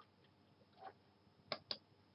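Two quick computer mouse clicks, about a fifth of a second apart, about one and a half seconds in, against near silence.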